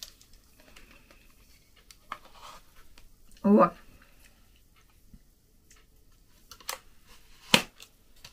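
Handling of a collapsible pop-up camping lantern, ending in two sharp plastic clicks as it is pushed shut. A brief vocal sound comes about halfway through.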